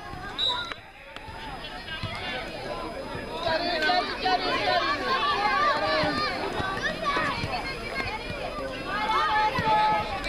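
Several high-pitched children's voices shouting and calling at once across a football pitch, overlapping, getting louder and busier from about three and a half seconds in.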